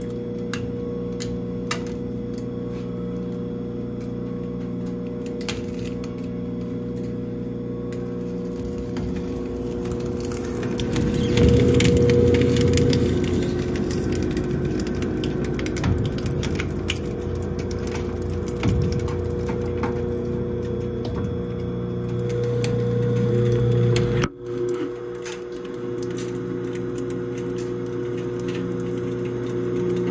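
Industrial hard-drive and SSD shredder running with a steady motor hum while its rotating cutter discs crunch and grind up a smartphone, with scattered sharp cracks. The grinding is loudest a little after ten seconds in. The hum briefly cuts out and resumes a little before the end.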